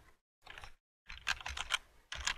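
Computer keyboard keys clicking as a word is typed: a short burst about half a second in, then a quick run of keystrokes in the second half.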